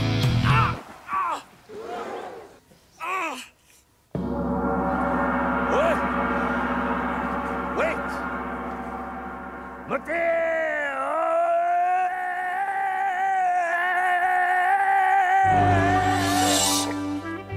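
The band's rock track breaks off, leaving a few short gliding vocal sounds. About four seconds in, a gong is struck once and rings, slowly fading. About ten seconds in, a long sung "Oh" is held over it, and the full band crashes back in near the end.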